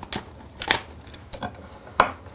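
A wall-mounted three-way light switch being handled and pulled out of its plastic electrical box: a few sharp, irregular clicks and light scrapes of the metal mounting strap and wires.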